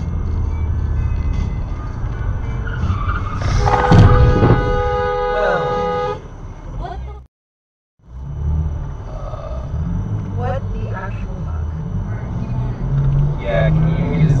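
Car road noise from a dashcam, with a car horn sounding for about two and a half seconds and a sharp, loud bang about a second into the honk. After a brief gap of silence, steady road noise resumes.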